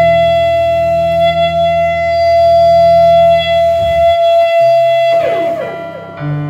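Electric guitar and keyboard holding a sustained chord without drums: a steady high ringing tone sits over held low notes. The low notes drop out about four seconds in, and a short falling smear around five seconds leads into a dip in level near the end.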